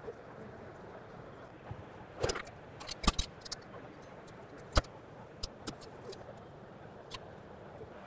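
Metal clicks and knocks of a WATERAX B2X pump end and its clamp being fitted by hand onto the fire pump's drive assembly: several sharp, separate clinks, the loudest about three seconds in, over a steady low background hum.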